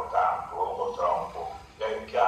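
A man's voice speaking over a video-call link, played into the room.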